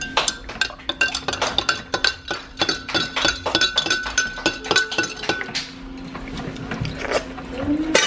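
A metal spoon clinking rapidly against the inside of a ceramic mug as coffee is stirred, with a ringing tone from the mug. The clinking stops about five and a half seconds in.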